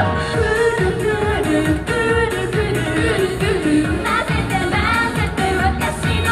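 A J-pop idol song: female voices singing a melody over a pop backing track with a steady dance beat.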